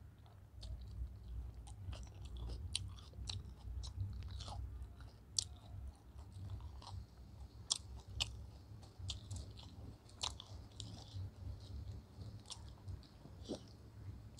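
Close-up chewing of a mouthful of chicken biryani and fried chicken, with many short wet mouth clicks and smacks throughout, over a low steady hum.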